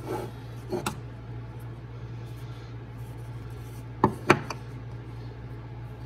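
Wooden calendar blocks being handled and set down on a countertop: a few light knocks near the start, then two sharp wooden clacks in quick succession about four seconds in, over a steady low hum.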